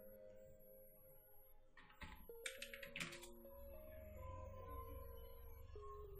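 Faint background music with sustained, slowly changing notes, and a few sharp computer clicks about two to three seconds in.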